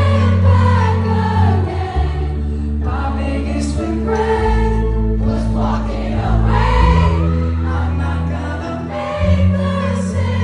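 Live pop band playing sustained bass and keyboard chords while a crowd sings along loudly with the lead vocal.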